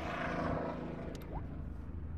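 Steady low rumble with a faint hum from a vehicle engine running nearby, with a couple of faint clicks a little after a second in.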